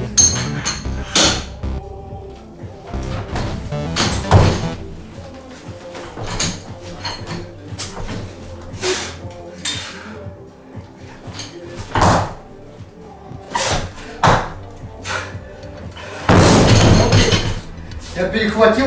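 Loaded barbell with rubber bumper plates being lifted and then dropped onto the rubber-matted floor. Short knocks and clanks of the bar and plates come during the lift. About two seconds before the end comes the loudest sound, a long crash as the bar lands and bounces.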